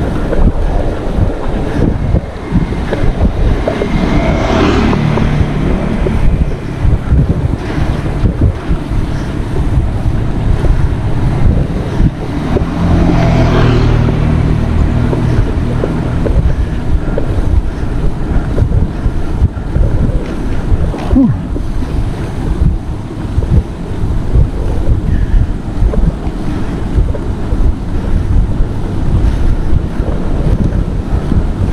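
Loud wind buffeting an action camera's microphone on a moving bicycle, a steady low rumble. It swells and brightens twice, about four seconds in and again about halfway through.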